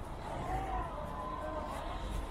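City street traffic on a wet road: a steady low rumble of car engines and tyres. A few faint gliding tones sit over it from about half a second in.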